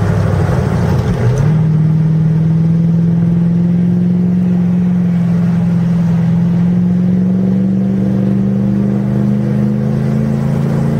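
A Mercedes car's engine, heard from inside the cabin. About a second in, the engine note dips, then jumps higher on a downshift. After that it pulls steadily, its pitch rising slowly as the car gathers speed out of the corner.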